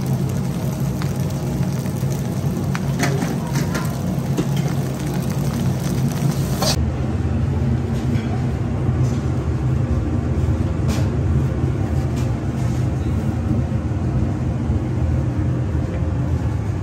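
Steady low mechanical hum of kitchen machinery, with a few light clicks and knocks. A hiss above the hum drops away suddenly about seven seconds in.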